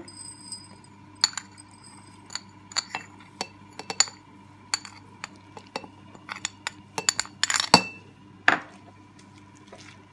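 Irregular glassy clinks and ticks as instant coffee granules are tipped from a small dish with a metal spoon into an empty glass jar, the spoon, dish and granules striking the glass. Some clinks ring briefly, and a louder cluster comes about three-quarters of the way through.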